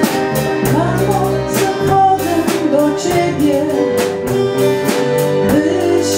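A woman singing solo into a microphone over instrumental accompaniment with a steady beat, her voice coming in about a second in.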